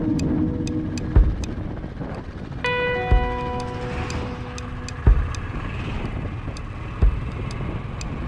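A vehicle horn sounds once, starting abruptly a few seconds in and holding a steady note for about two seconds, over the road and wind noise of a riding motorcycle. Background music with a heavy thump about every two seconds and quick high ticks runs beneath.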